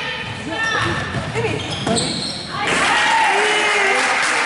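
A basketball dribbling on a hardwood gym floor under shouting voices from players and spectators, echoing in the gym. The crowd noise grows louder about two and a half seconds in.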